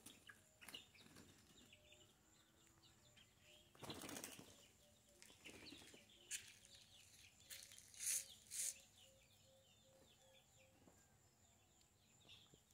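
Near silence in the open air: faint small-bird chirps now and then, with a few short rustling bursts, two close together about eight seconds in being the loudest.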